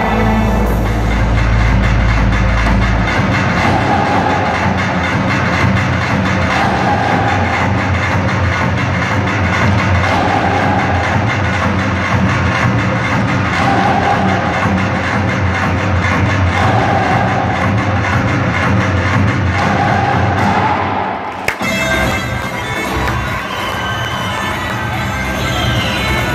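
Fast Black Sea horon folk dance music, with a quick even beat, accompanying a line dance. There is a short dip and a sharp click about 21 seconds in, after which the music carries on.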